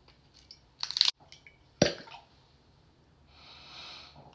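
A bottle's cork-style stopper being worked loose, with a brief rubbing squeak about a second in and a sharp pop a little before two seconds as it comes free. A long sniff at the bottle's neck follows near the end.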